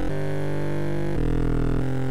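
Serum synth bass-support patch playing long held notes through tube distortion, which makes it grimy and adds high end. It changes note about a second in and again shortly before the end.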